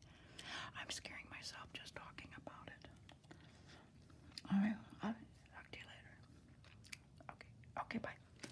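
Gum chewing close to the microphone: a run of small wet mouth clicks and smacks, with soft whispering breaking in and a brief louder voiced sound about four and a half seconds in.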